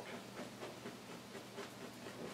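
Faint scratchy strokes of a stiff fan brush pushing oil paint upward on a canvas, over a low steady room hum.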